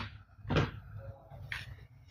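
Hard plastic toy guns knocking against each other and the surface as they are handled and set down: a clear knock about half a second in and a fainter one about a second and a half in.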